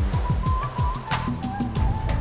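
A TV news segment jingle: electronic music with a fast beat of sharp hits, repeated falling bass swooshes, and a held high whistling synth note.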